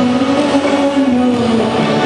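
Live band playing an old Hindi film song, with a long held note whose pitch wavers slightly over the accompaniment.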